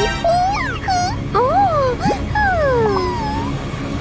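A cartoon mouse's voice giving a string of high-pitched whimpering squeaks that slide up and down in pitch, over background music.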